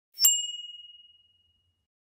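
A single ding about a quarter second in: one clear high tone rings on and fades away over about a second and a half.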